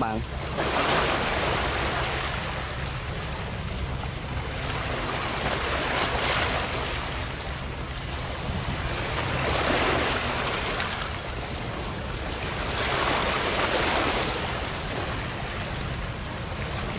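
Sea waves washing in, swelling about every four seconds, over a steady low rumble of wind on the microphone.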